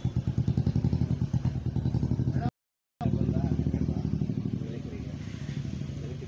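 An engine running at idle nearby, a steady rapid pulsing low note. The sound cuts out completely for about half a second midway, then carries on and eases off slightly toward the end.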